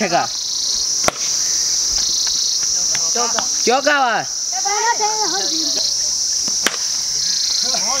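A steady, high-pitched chorus of insects (cicadas/crickets) drones loudly throughout. Two sharp knocks cut through it, one about a second in and one near the end, from the cricket bat and ball. Players give short shouts in the middle.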